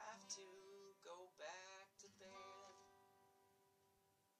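Acoustic guitar strummed a few times, the last chord about two seconds in left to ring and fade away.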